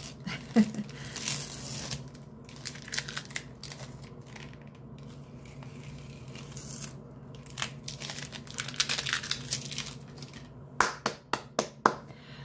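Masking tape being peeled off watercolour paper and a plastic board, in a series of ripping pulls. A few sharp clicks come about eleven seconds in.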